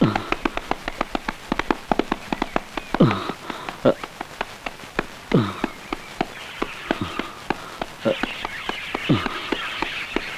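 Film soundtrack of a horse chase: rapid, irregular clicking like hoofbeats and running feet, with a short falling vocal cry every second or two.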